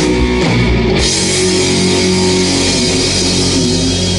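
Rock music from a band: electric guitar and bass over a drum kit, playing steadily.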